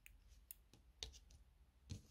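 Small scissors snipping a strand of crochet yarn: a few faint, sharp clicks over near silence.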